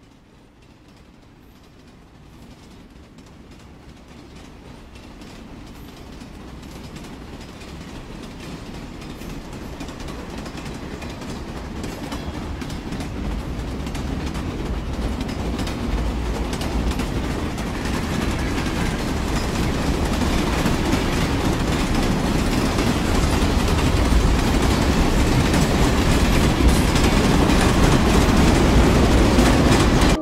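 A train-like rumble with a dense rattle, swelling steadily louder over the whole stretch and cutting off suddenly at the end.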